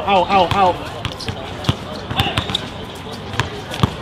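A basketball being dribbled on an outdoor hard court: a series of separate, irregularly spaced bounces. A man's shouting voice is heard in the first second.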